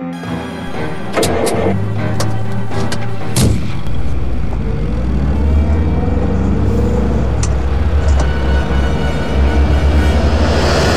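Dramatic film background score: a run of sharp percussion hits over the first few seconds, then a deep, steady low rumble that holds to the end, with a few more hits later on.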